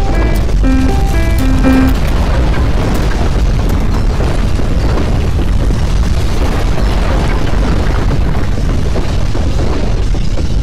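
An electronic alert chime of short notes stepping up and down in pitch stops about two seconds in, leaving a loud, steady deep rumble.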